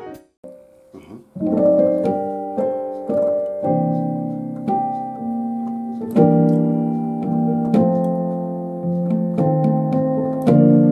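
Piano playing slow gospel chords with passing tones, each chord struck and left to ring and die away. It starts about a second in, after a short pause.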